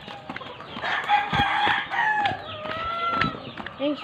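Roosters crowing, several long calls overlapping one another, with a few soft footsteps on dirt.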